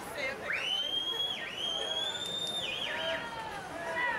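Spectators whistling loudly to cheer on racing swimmers. A long, piercing, high whistle sweeps up, breaks off briefly about a second and a half in and carries on until past two seconds, followed by a few shorter whistles. Crowd shouting and chatter run underneath.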